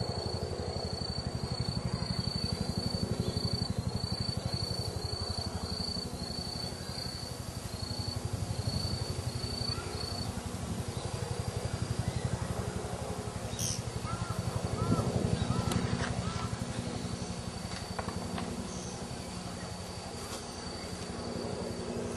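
Steady low outdoor background rumble, with a thin high pulsing tone in the first half and a few faint bird chirps about two thirds of the way through.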